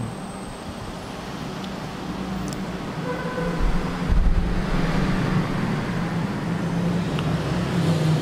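Motor vehicle traffic running close by, a steady engine noise that grows louder from about three seconds in, with a low rumble around four seconds in.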